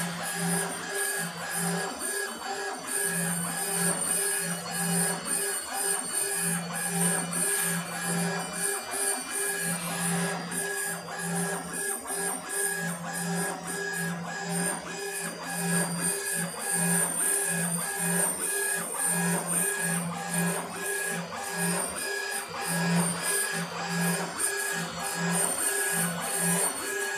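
Laser engraving machine raster-engraving granite: the head sweeps back and forth, and its drive hums in runs of about half a second to a second that start and stop with each pass, with background music.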